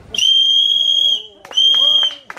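A conductor's whistle blown as a departure signal, in two steady, shrill, single-pitch blasts: the first lasts about a second, and the second starts about a second and a half in.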